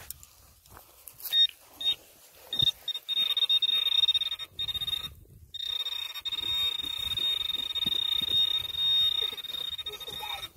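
Garrett Pro Pointer pinpointer sounding its alert: a couple of short high beeps about a second in, then a steady high-pitched tone that breaks off briefly in the middle and comes back. The continuous tone signals that the probe tip is on a metal target in the dig hole.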